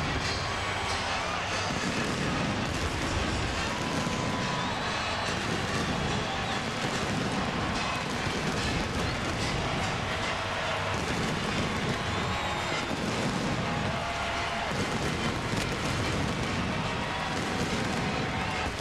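Stadium halftime show performance by college marching bands: band music heard through a dense wash of stadium noise, with heavy low booming that swells and fades every couple of seconds.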